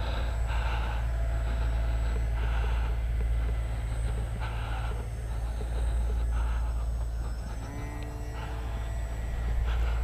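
Wind rumbling on the microphone, with the faint buzz of an RC plane's SunnySky X2212 1400 kV brushless motor and 8x4 propeller flying overhead; its pitch slides as the throttle changes a few seconds before the end.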